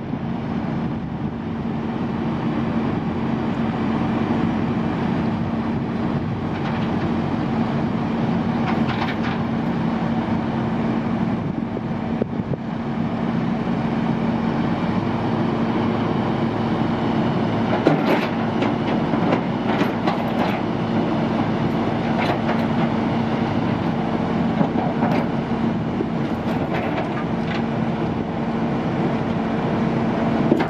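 A heavy wrecker's diesel engine runs steadily with a constant hum, and a second, higher tone joins about halfway through. Scattered sharp metallic clanks come from the rigging.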